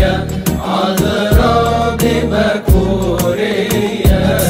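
Devotional hymn music: a solo voice sings a melody over sustained bass notes and a backing track, with drum strikes every half second to a second.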